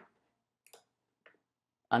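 Two faint computer mouse clicks, a little over half a second apart.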